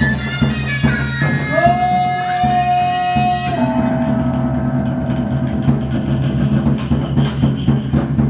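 Vietnamese chầu văn ritual music. A held melody line steps and slides between pitches over steady low tones, with scattered drum and clapper strokes.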